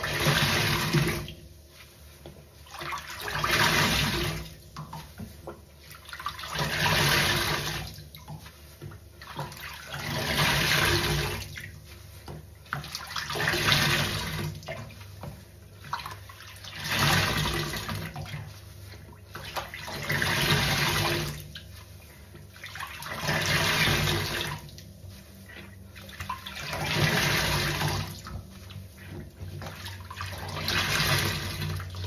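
Two large water-soaked sponges squeezed and wrung by hand over a stainless steel sink. Each squeeze pushes out a rush of water, about nine times at a steady pace of roughly once every three and a half seconds, with quieter dripping and splashing between.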